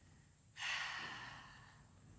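A woman's long breath out, a sigh after exertion, starting suddenly about half a second in and fading away.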